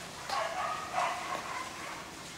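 A dog barking several times in quick succession within the first second and a half.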